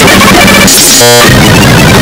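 Extremely loud, heavily distorted and clipped mash of noise and music, typical of an 'earrape' video edit effect, with a short harsh buzzing tone about a second in.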